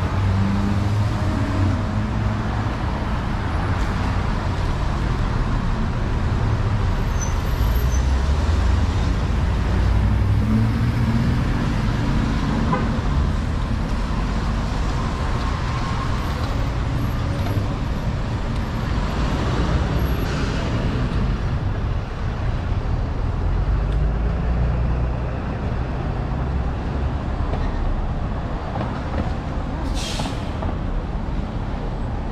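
City street traffic: car and truck engines running and passing close by, making a steady low rumble.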